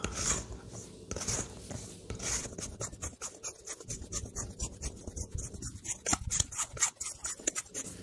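A plastic dough scraper and a hand working soft bread dough in a stainless steel mixing bowl: quick, irregular scrapes against the bowl and soft rubbing as the dough is pressed into one lump.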